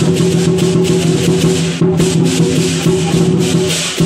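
Temple-procession music: rapid, steady percussion hits with a bright, cymbal-like clash over a steady low held tone.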